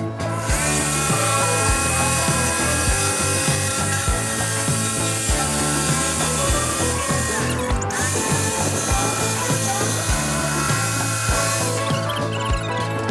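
Small handheld power tool running on a sheet of 1/4-inch lauan plywood: a steady high-pitched motor whine that spins up half a second in, stops briefly near the middle, then runs again and cuts off near the end.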